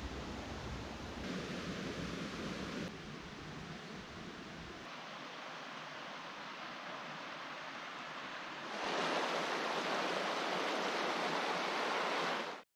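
Steady rushing of a shallow, rocky forest brook, louder from about nine seconds in. Before that there is a quieter, steady outdoor rushing noise whose level steps up and down abruptly a few times.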